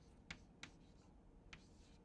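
Chalk writing on a blackboard: a few faint, short taps and scratches as letters are stroked out.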